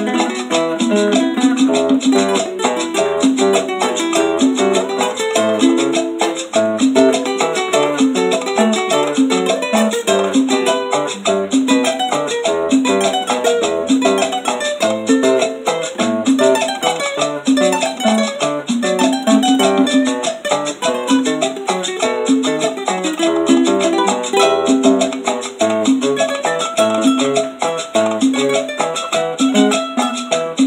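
Guitar playing a continuous picked melodic lead (punteo) in the santafesino style, with bass notes underneath in a steady rhythm.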